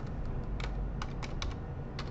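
A few clicks of a computer keyboard, about five sharp keystrokes in quick succession, over a low steady room hum.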